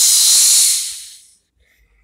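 Explosion sound effect for the toy being smashed: a loud hissing rush of noise that fades out over about a second.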